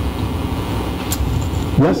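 Steady low rumble of lecture-hall room noise, with one brief click about a second in; a man says "Yes?" near the end.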